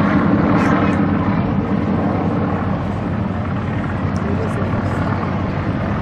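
Several Yak-52s' nine-cylinder radial engines droning together overhead during a formation climb, the sound growing a little fainter after a couple of seconds.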